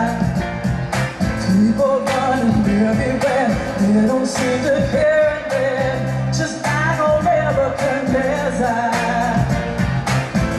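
A woman singing a pop song live with amplified band accompaniment and a steady beat.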